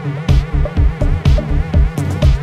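Electronic dance music, melodic progressive house, with a steady pounding kick drum and a buzzing synth line whose pitch wobbles up and down. A bright clap or hi-hat hit lands about once a second.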